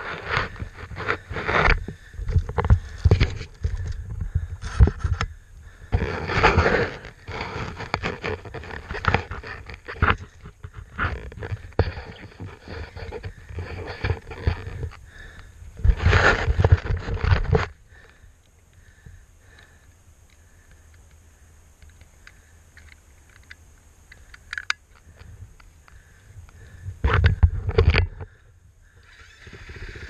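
KTM 450 XC-F single-cylinder four-stroke dirt bike engine revved in short, irregular bursts with scraping, as the bike is wrestled up a rock ledge. After about 18 seconds it drops to a much quieter stretch, then there is a loud burst of a second or so near the end.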